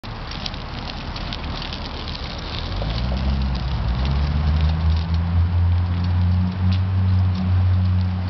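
Crackling of a small child's bike tyres rolling over rough, cracked asphalt. About three seconds in, a low steady hum comes in and keeps up.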